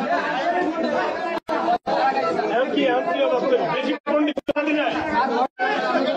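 Many men's voices talking over one another in a crowded room. The sound cuts out completely for a moment several times.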